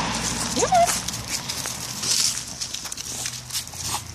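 A bulldog moving about on a leash over a path covered in dry leaves: scuffs and rustles, with one short rising vocal sound about half a second in.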